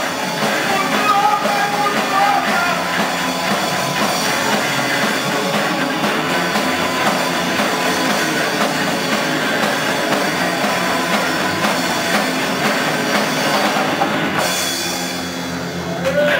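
Live punk blues band playing: electric guitar, bass and drum kit, with a few sung lines in the first seconds. The cymbals drop out about a second and a half before the end, and the music gets a little quieter.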